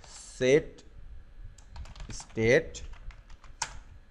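Typing on a computer keyboard: a scatter of separate key clicks. Two brief vocal sounds come from a voice about half a second and two and a half seconds in, and they are louder than the clicks.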